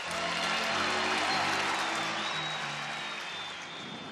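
Background music of held, slowly changing notes under the broad noise of a stadium crowd cheering, easing down toward the end.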